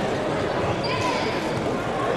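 Indistinct overlapping voices and chatter from people around the mats in a large sports hall, a steady background din with no single clear voice.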